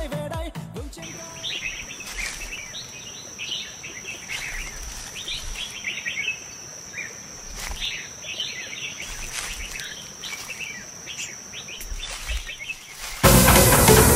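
Forest ambience: many birds chirping over a steady high-pitched insect drone, after music fades out in the first second. Loud electronic dance music cuts in abruptly near the end.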